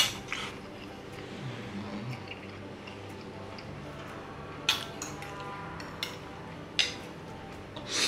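Eating sounds from a bowl of curry instant noodles: a few sharp clinks of a fork and spoon against a ceramic plate, the loudest right at the start and more about five and seven seconds in, with brief wet slurps of noodles.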